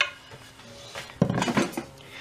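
A sharp knock as something is set down on a wooden workbench, then quieter clinks and scrapes of metal hand tools being handled on the bench, a little louder past the middle.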